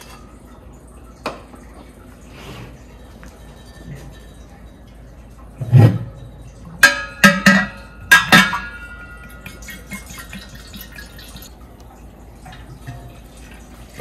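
A glass jug knocks and clinks several times against a stainless steel keg, the clinks ringing briefly, with a heavy thud just before them. Hard cider is then poured faintly from the jug into the keg.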